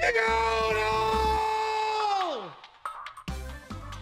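A man's voice holding one long, loud wailing note that he belts out as loud as he can, then sliding down in pitch and dying away about two and a half seconds in.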